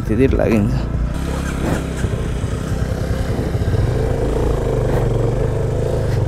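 Motorcycle engine running at low speed, a steady low rumble, as the bike moves off slowly over gravel, with brief snatches of voice near the start.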